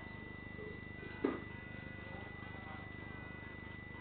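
Steady low hum of room tone with a thin, constant high-pitched tone over it, broken once, just over a second in, by a single short knock.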